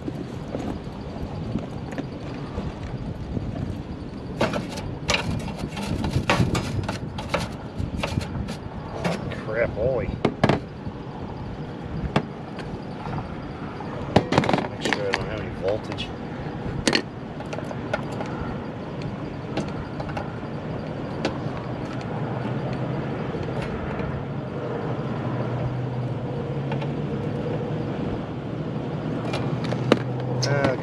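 Wind buffeting the microphone, with a run of sharp clicks and knocks from hands and tools working on the wiring in a condenser unit's electrical compartment. From about halfway through, a steady low hum comes in.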